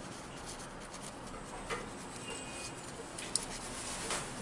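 Faint rubbing of a paper nail wipe on the head of a nail-art stamper as it is wiped, with a light click about midway and a sharper click near the end.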